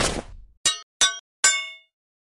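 Logo sound effect: the tail of a crashing whoosh dies away, then three sharp metallic clangs sound about 0.4 seconds apart, each ringing briefly, the last ringing longest.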